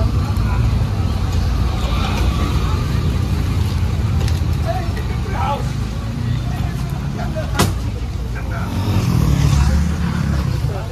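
Road traffic: a motor vehicle's engine running steadily close by, growing louder near the end, with a single sharp click about three-quarters of the way through.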